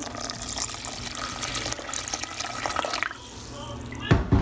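Water poured in a steady stream into an aluminium pressure cooker, splashing onto the contents, stopping about three seconds in.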